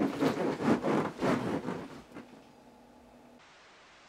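Bedding and clothes rustling loudly as a person sits up and climbs out of bed, a quick run of irregular rustles that dies away after about two seconds into faint hiss.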